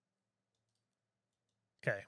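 A few very faint computer clicks in near silence, from mouse or keyboard use while selecting text, followed by a man saying "Okay" near the end.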